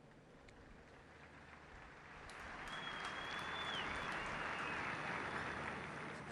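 Audience applauding, swelling about two seconds in and dying away near the end, with a brief high thin tone over it around the middle.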